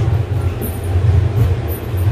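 Steady low rumble with a continuous hum, like a running motor or machine, holding an even level throughout.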